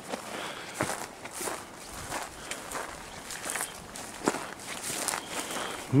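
Footsteps crunching on loose, gravelly hillside soil strewn with quartz chips, slow and uneven.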